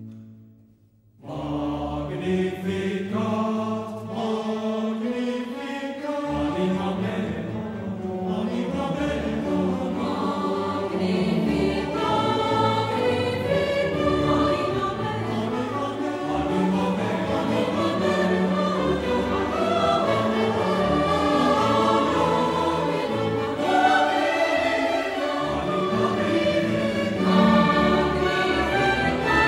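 Background music: a choral piece with a choir singing over instrumental accompaniment. It starts about a second in, after a brief gap.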